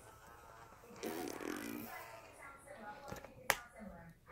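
A faint voice murmuring about a second in, then a single sharp click about three and a half seconds in, amid small handling sounds.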